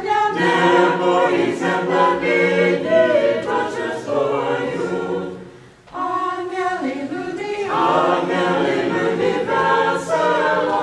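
Small Orthodox church choir singing a Christmas carol unaccompanied. There is a brief break between phrases about six seconds in, then the singing resumes.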